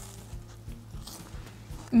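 Two people quietly chewing bites of a crunchy Lion cereal bar with no chocolate coating, heard faintly over a low steady hum.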